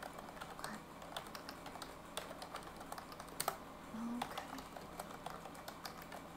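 Computer keyboard typing: quick, irregular runs of key clicks, with the steady hiss of a fan behind.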